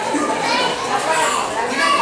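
Young children's voices chattering and calling out over one another, mixed with general talk.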